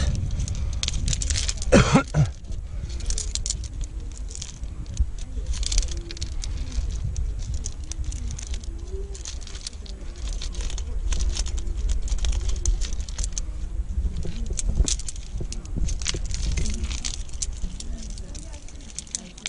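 Metal climbing gear, carabiners and cams on a harness rack, jingling and clicking together as the climber moves, over a steady low rumble. There is a louder clatter about two seconds in.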